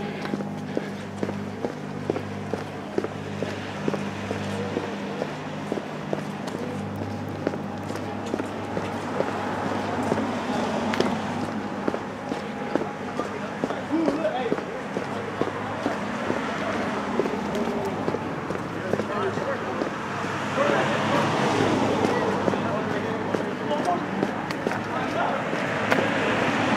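Street noise at night: a steady engine hum in the first part, then indistinct voices over traffic noise, with frequent small knocks.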